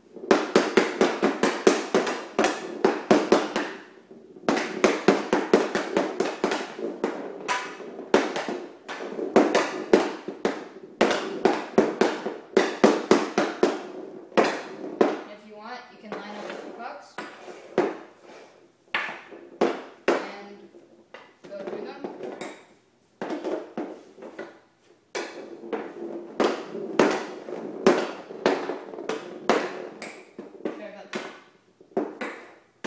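Hockey stick blade rapidly tapping a smart hockey ball back and forth on plastic dryland flooring tiles, several quick clicks a second in long runs broken by short pauses.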